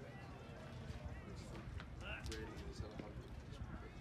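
Faint, indistinct voices of people talking in the background, with scattered short clicks and knocks.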